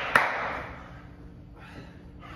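A single sharp thud just after the start, as the coaches work through sit-ups and Russian twists on a gym floor, followed by a breathy exhale that fades over about a second.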